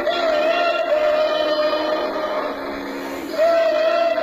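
A young boy singing into a microphone over backing music. He holds a long, slightly wavering note at the start, and takes up another held note about three and a half seconds in.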